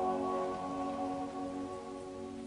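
Eight-voice a cappella vocal ensemble holding a final sustained chord, which fades away toward the end.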